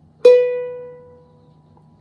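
A single note B plucked on a Rozini student cavaquinho's steel strings, ringing and fading away over about a second and a half. It is a tuning check against a clip-on tuner, and the note comes out matching.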